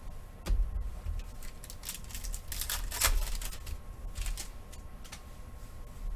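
Trading cards and a hard plastic card holder handled on a table: irregular clicks, snaps and paper-like rustles, with soft thuds on the desk, busiest around the middle.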